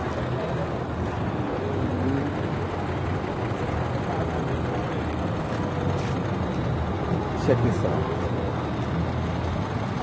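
Steady traffic noise from a busy multi-lane city street, cars and a bus passing, with voices of passers-by in the background and a short burst of speech about seven and a half seconds in.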